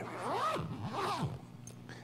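Zipper on a zippered book cover being pulled shut in two strokes, each rising then falling in pitch as the pull speeds up and slows down.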